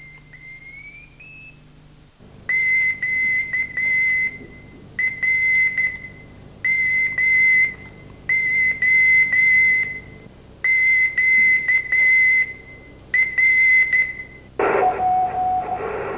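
Morse code sent as a high-pitched beeping tone, keyed in about six runs of dots and dashes with short pauses between them, starting a couple of seconds in. Near the end the beeping gives way to radio hiss with a lower steady tone.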